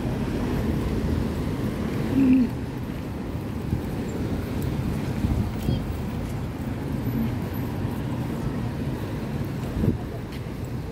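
City street ambience: a steady low rumble of traffic on the adjacent road, with wind on the microphone and faint voices of passers-by. A short, louder sound comes about two seconds in.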